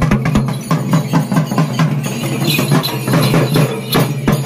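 Large double-headed barrel drum beaten with a stick in a fast, dense festival rhythm, over a steady low droning tone.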